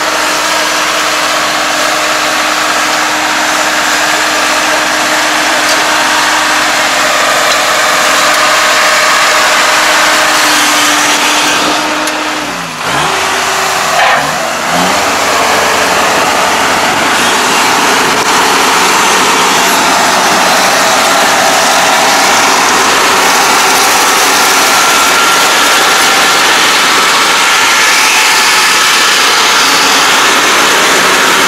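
Kubota ARN460 crawler combine harvester running loud and steady under working load as it drives into and cuts standing rice. About halfway through, the engine note dips and falls in pitch briefly, then rises back to its steady run.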